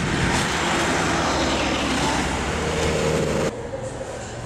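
A minibus engine running, with roadside traffic noise, as a passenger boards. The sound cuts off abruptly about three and a half seconds in, leaving quieter room tone.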